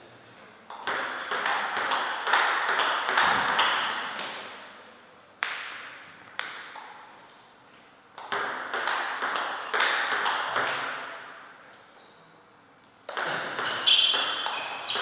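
Table tennis ball clicking off rackets and the table in short runs of quick hits, three runs with two single hits between them, each hit leaving a ringing echo in the hall.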